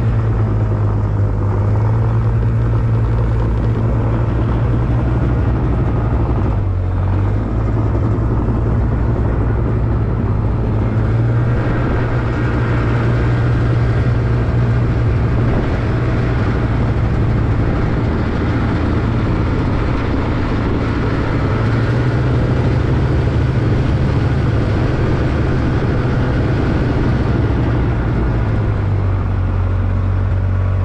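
Snowmobile engine running under way, a steady low drone whose pitch shifts in small steps as the throttle changes, with a brief drop about seven seconds in.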